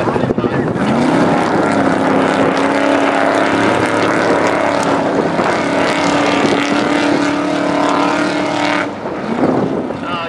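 Off-road race truck's engine running hard as it accelerates away over loose sand, its pitch climbing in the first two seconds and then holding steady. The sound drops suddenly near the end.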